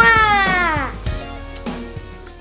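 A single high meow-like call that slides down in pitch over about a second, over background music with a steady beat.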